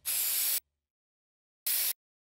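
Two short hisses of an aerosol spray-paint can, the first about half a second long and the second shorter near the end, each cutting off sharply with dead silence between: an added spray-paint sound effect.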